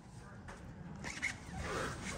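Faint rustling and scraping handling noise from a handheld camera being moved. It grows louder about a second in, with a few light clicks.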